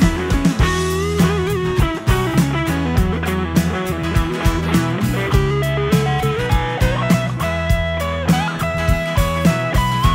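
Live blues-rock band playing an instrumental break: a semi-hollow electric guitar plays a lead line with bent notes over drums, a steady beat and strummed acoustic guitar.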